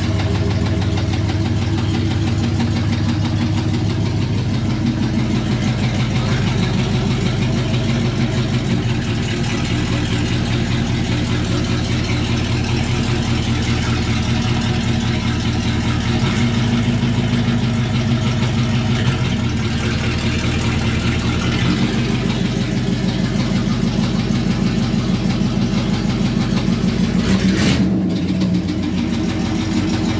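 Car engine idling out of gear, running with a rhythmic knock and small rises in speed now and then. The owners hear the knock only out of gear and suspect a broken connecting rod hitting the piston.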